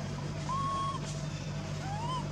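Baby macaque giving two short high coos, the first held level, the second rising and dropping off, over a steady low hum.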